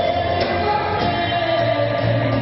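A live band, with a woman singing into a microphone over electric guitar, bass, drums and keyboards. She slides up into a long held note at the start, which eases down slightly near the end.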